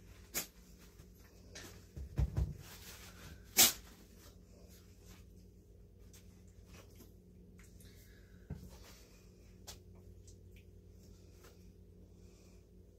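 Scattered kitchen handling sounds as cooked bacon is laid onto bread on a wooden cutting board. There are a few low thumps about two seconds in, a sharp click a second later that is the loudest, and then only faint light clicks.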